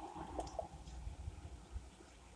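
Faint sounds of a bite into a Burger King Southwest Whopper stacked with taco chips, sauce and guacamole, then chewing: soft wet squishes with a few small crunching clicks about half a second in.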